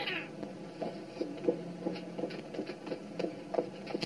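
A cat meowing, with a few light taps.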